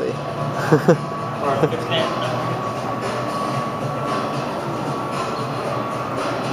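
A short laugh and a few spoken sounds in the first two seconds, then steady indoor background noise of a large public space: an even hum with a faint constant high tone.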